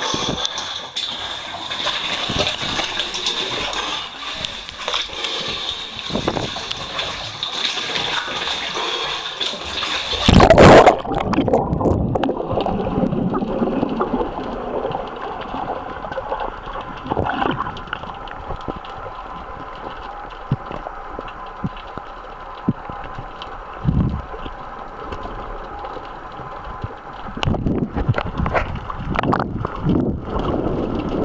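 Water sloshing and splashing at the surface, then a loud splash about ten seconds in as the snorkeler dives. After that comes muffled gurgling water heard underwater, with a few dull knocks.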